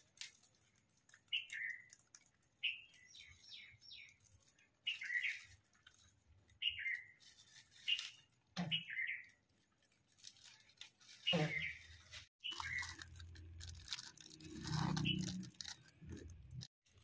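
A small bird chirping over and over, short falling chirps about every second or so, with crinkling of snack wrappers and a plastic bag being handled, denser in the last few seconds.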